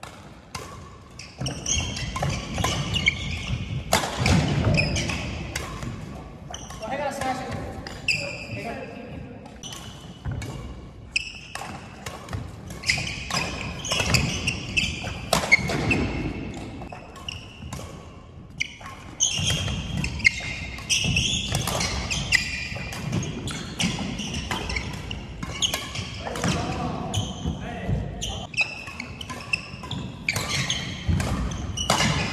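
A badminton doubles rally on an indoor wooden court: sharp racket strikes on the shuttlecock and thudding footwork at an irregular pace, with voices in the hall.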